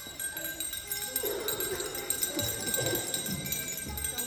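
Jingle bells ringing in a steady shimmering jingle, with some lower, muffled sound underneath from about a second in.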